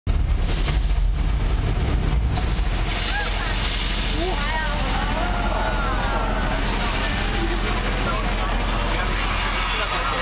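Studio Tour tram rumbling steadily as it rolls along, heavier in the first two seconds. From about three seconds in, wavering calls that rise and fall in pitch sound over the rumble.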